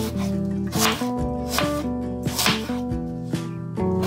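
Background music with held, sustained notes, over a few crisp cuts of a kitchen knife slicing through a raw apple onto a wooden cutting board.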